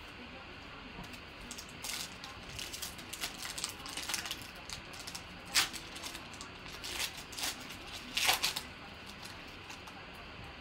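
A Donruss Optic basketball card pack's shiny wrapper being handled and torn open: a run of sharp crinkles and rips, loudest about halfway through and again near the end.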